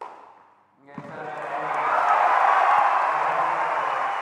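Tennis crowd cheering and applauding a won point, swelling from about a second in and staying loud, just after a single sharp hit at the start.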